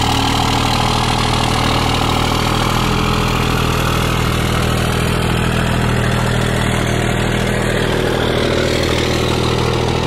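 A pickup truck's engine idling steadily, with an even low hum that does not change.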